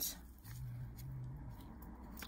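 Faint handling sounds as gloved hands hold and move cardboard-backed plastic packets of dried flowers, with a brief low hum in the middle.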